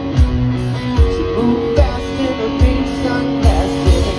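Live rock band playing an instrumental passage: electric guitars holding notes over drums, with a kick-drum beat about every 0.8 s.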